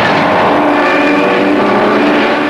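A loud, steady engine drone over a rushing noise, holding one pitch throughout.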